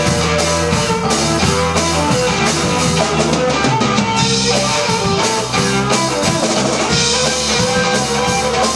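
Live rock band playing: a drum kit played with steady hits and cymbal crashes under electric guitar.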